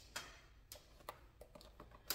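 A few faint, scattered clicks and taps from a power adapter plug and its cord being handled and plugged in, over quiet room tone.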